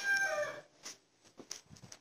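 A long, held animal call in the background, one steady pitch that falls at the end and stops about half a second in; after it, near silence with a few faint clicks.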